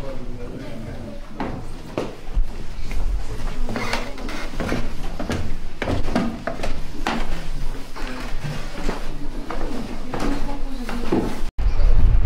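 Footsteps going down old wooden stairs: shoes knocking irregularly on the timber treads and landings, one step after another.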